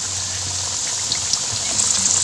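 Potato fries deep-frying in hot oil in a wok: a steady sizzling hiss dotted with small pops and crackles.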